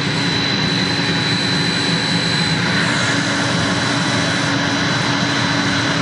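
Water pump motor on a variable frequency drive running steadily, a loud even mechanical hum with a constant high-pitched whine over it.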